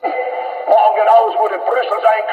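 A man giving a speech on an old archival film soundtrack, played back and re-recorded, with a thin, narrow sound lacking lows and highs. It starts abruptly as playback resumes.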